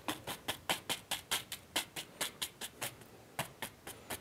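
Oil-paint brush dabbing and tapping against a stretched canvas in quick, scratchy strokes, about six a second, with a brief pause shortly before the end.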